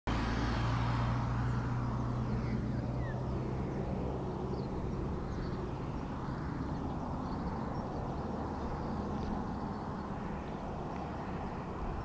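A car passing on a highway. Its engine hum and tyre noise are loudest at the start and fade away over the first few seconds, with a few faint high chirps above.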